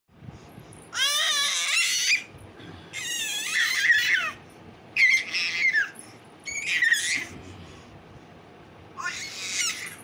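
Baby squealing: five high-pitched excited squeals, each about a second long, spaced about two seconds apart, the pitch bending up and down within each.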